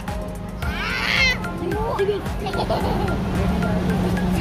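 A young child's high-pitched squeal of laughter about a second in, followed by lower voices and chatter over a steady background hum.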